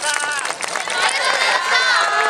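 A group of high voices shouting together in chorus, the calls long and drawn out and overlapping.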